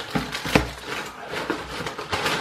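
Handling noise: rustling with several short knocks and clicks as items are taken out and moved about, with a louder knock about half a second in.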